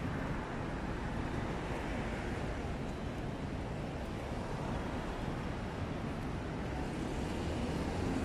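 Steady hum of city street traffic, cars driving past on the road alongside.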